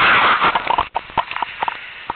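A loud burst of rustling, then a string of irregular short snaps and clicks: brush, twigs and leaf litter against and under a helmet-mounted camera as its wearer moves through woodland undergrowth.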